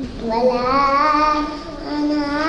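A young girl's voice chanting Quranic recitation into a microphone, one long melodic vowel drawn out and held with a slight waver.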